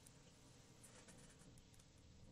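Very faint pen strokes writing on paper, a cluster of soft scratches about a second in; otherwise near silence.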